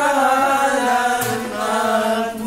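Several voices singing a Tagalog love song together as a harana serenade, the tune held in long, sustained notes.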